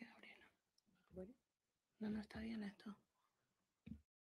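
Faint, low speech in three short phrases, near the start, just after a second in, and again about two seconds in, much quieter than the speech on either side.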